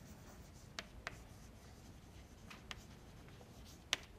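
Chalk writing on a blackboard: faint scratching strokes with a few light taps, the sharpest tap just before the end.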